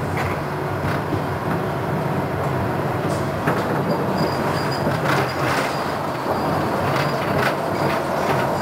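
Konstal 105Na tram running along the track, heard on board: a steady rumble of motors and wheels on rail, with several short knocks of the wheels over rail joints and a faint high whine in the second half.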